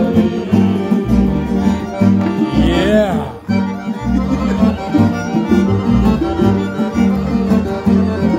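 A violin played live at close range over a steady, pulsing bass accompaniment, with a sweeping glide in the violin line about three seconds in.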